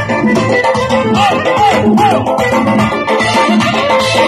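Loud live dance music: a keyboard melody over a steady drum rhythm that includes an Uzbek doira frame drum. Three short sliding notes come in the melody about midway.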